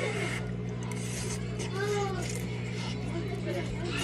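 Quiet eating noises of a mouthful of noodles being chewed, over a steady low hum. A faint voice rises and falls briefly about halfway through.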